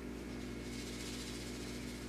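Room tone: a steady low electrical hum with a faint hiss.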